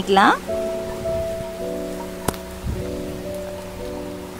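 Soft background music of held chords that change a few times, over the faint sizzle of chopped garlic frying in hot oil in a kadai. A single sharp click comes about halfway through.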